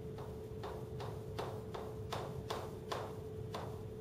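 Chalk tapping on a blackboard as a row of zeros is written, about ten quick strokes at two or three a second, over a faint steady hum.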